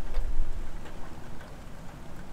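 Low rumble of wind buffeting a clip-on microphone, strongest in the first half second and then easing, with a few faint clicks.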